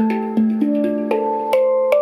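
Steel handpan tuned to D minor, played with the fingertips: a quick run of about seven struck notes that climb higher in the second half, each ringing on over a sustained low note.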